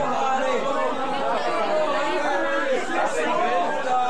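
Several people talking over one another in a room: overlapping chatter with no single clear voice.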